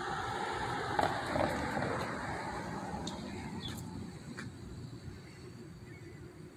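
Background road traffic noise, a diffuse rush that slowly fades over several seconds, with a few faint high chirps.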